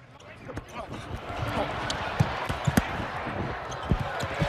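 Basketball bouncing on a hardwood arena court under arena crowd noise that builds over the first second, with scattered sharp knocks and a heavy thump near the end as a player dunks.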